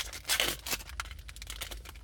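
Rustling and crinkling of a foil trading-card pack wrapper and cards being handled, the loudest rustle about half a second in, over a steady low hum.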